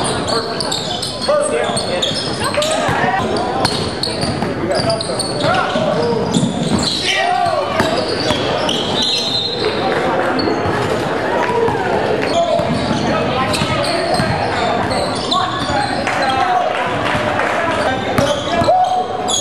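Live basketball game sound in a gymnasium: a basketball bouncing on the hardwood floor amid indistinct calls and chatter from players and onlookers, echoing in the large hall.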